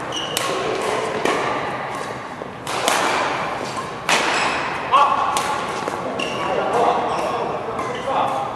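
Badminton rackets striking a shuttlecock in a fast doubles rally: sharp hits about once a second, with brief squeaks of shoes on the court mat between them.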